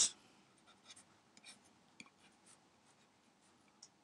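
Faint, scattered ticks and light scratches of a stylus writing on a tablet, a few strokes a second apart.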